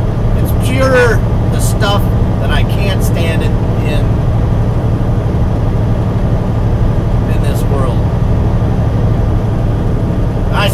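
A truck's diesel engine idling with a steady low hum, heard from inside the sleeper cab, under a man's scattered words.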